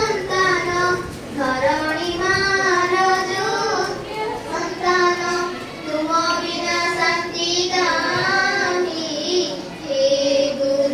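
A schoolgirl's voice singing a slow song, gliding between long held notes with short breaths between phrases.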